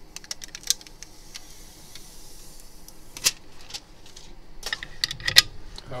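Clicks and light metal knocks as a laminating machine's metal glass mould, with the phone glass in it, is handled and set down onto the machine's tray. There is a louder knock about three seconds in and a cluster of knocks near the end.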